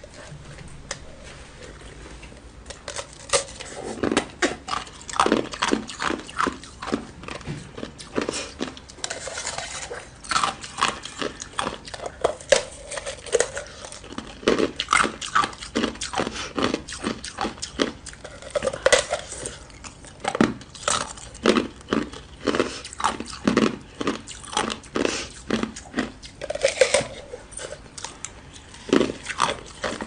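A block of ice in a clear plastic bag being squeezed and broken by hand: a long, irregular run of sharp cracks and crunches that begins a couple of seconds in, several a second at times.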